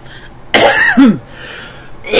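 A woman coughing into her cupped hands: two hard coughs about half a second apart, starting about half a second in.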